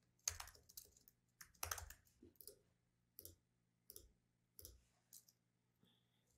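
Faint computer keyboard keystrokes as a short title is typed: a dozen or so separate taps, irregularly spaced, thinning out near the end.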